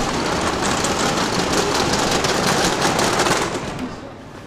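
Luggage trolley's wheels rolling across a tiled floor, a steady loud rattle that fades away near the end.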